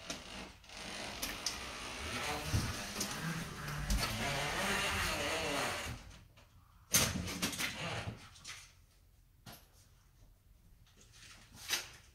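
Automatic drywall taper (TapePro-style bazooka) rolling paper tape and joint compound along a wall joint: a steady scraping, rushing noise for about five seconds. About seven seconds in comes a sudden clack and brief rattle as the run ends and the tool comes off the wall, followed by a few small clicks.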